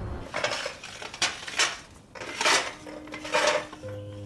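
Ceramic bowls and dishes clinking on a dining table, about five separate sharp clinks over a few seconds. Soft music begins near the end.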